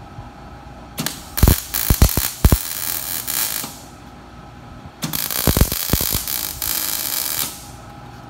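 MIG welder laying two short plug welds, each about two and a half seconds of crackling arc with a few sharp pops, filling the holes that fix an expander pan to a trap pan.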